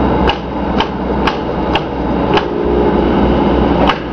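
Sharp clicks, about two a second at first, over the steady low rumble of a car cabin.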